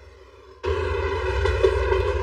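Faint background music, then a little over half a second in a loud, steady rumble starts suddenly: a train running through a railway tunnel, with music playing over it.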